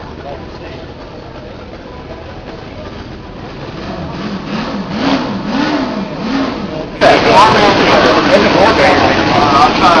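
A miniature V8 model engine starts running loudly about seven seconds in and is revved, its pitch jumping quickly up and down, over a background of room chatter.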